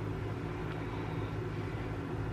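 Steady low hum with a faint hiss behind it: background room noise, unchanging throughout.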